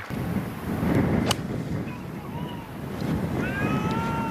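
Wind buffeting the microphone, with a single sharp crack of a golf club striking the ball a little over a second in. Near the end, spectators start calling out.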